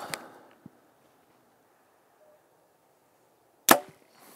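A Hoyt VTM 34 compound bow being shot: a single sharp, loud snap of string and limbs as the arrow is released near the end, after a few seconds of quiet while held at full draw.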